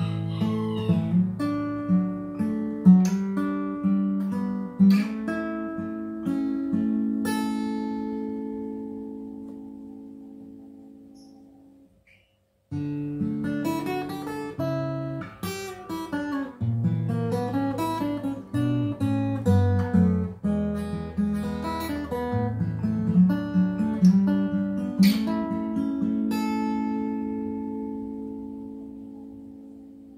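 Acoustic guitar fingerpicked in two phrases. Each phrase is a run of picked notes ending on a chord left to ring and fade away, and the second phrase starts after a brief silence about halfway through.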